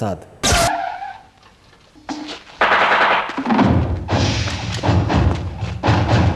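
Action-film soundtrack: a sharp bang about half a second in, then after a short lull a sudden rush of noise and loud, dense music.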